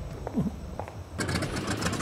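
Biplane's radial engine running on the ground with its propeller turning, cutting in suddenly a little over a second in after a quiet hangar room tone.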